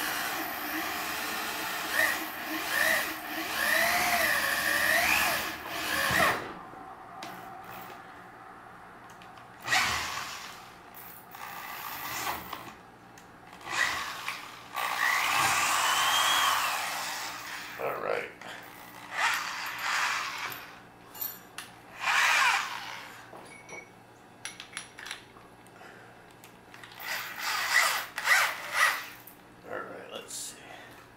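Cordless drill boring a pilot hole through soft metal plate, run in several bursts with the motor's whine rising and falling in pitch.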